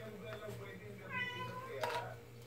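Hand-held can opener being worked on a tin can: a single short high squeal about a second in, then a click near the end.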